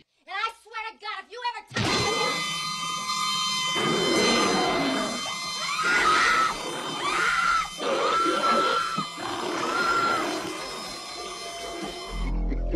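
A brief voice with swooping pitch, then from about two seconds in a loud, dense music bed with a series of high, held screams over it, about four of them in the second half: a horror-film trailer soundtrack.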